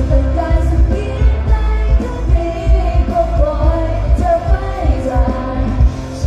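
Live Thai pop music over a concert PA, heard from within the crowd: singers' voices over a band with a heavy, pulsing bass beat.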